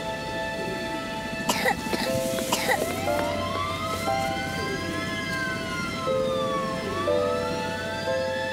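Soft background music with a child coughing twice, about a second apart, then a siren wailing slowly up and down.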